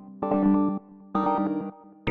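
A looped synth-keyboard melody of short, detached chords, two in this stretch, each about half a second with a short gap between, played back through the Waves Brauer Motion stereo panner plugin on its 'Swell 1' preset.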